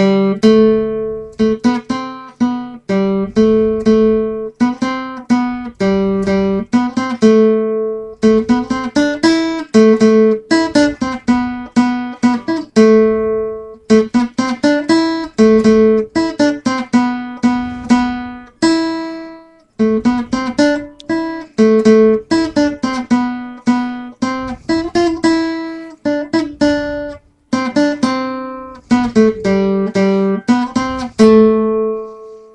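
Handmade acoustic guitar played as a single-note melody line, each string plucked separately and left to ring and decay, the notes moving steadily up and down with a couple of short breaths in the phrasing.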